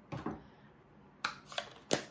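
Three light, sharp clicks and taps, about a fifth of a second in, just past the middle and near the end, as a clear acrylic stamp block and an open ink pad are handled and set aside on the craft table.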